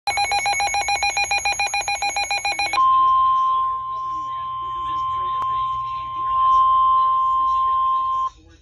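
Weather alert radio sounding an emergency alert: a rapid pulsing alarm of about twelve beeps a second for nearly three seconds, then switching to the steady single-pitch NOAA Weather Radio warning tone (1050 Hz). The tone signals that a warning broadcast is about to follow, here a special marine warning.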